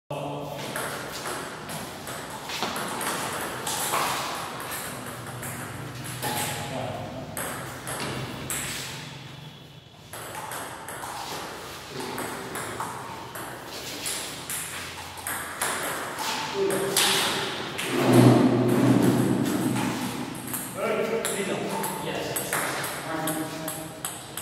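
Table tennis rally: the ball clicking back and forth, struck by paddles and bouncing on the table, in irregular bursts of hits. Voices are heard between and over the strikes.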